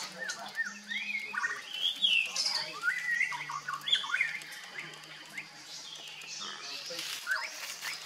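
Birds calling and chirping: a run of short, quick notes that sweep up and down in pitch, thickest in the first half and returning near the end.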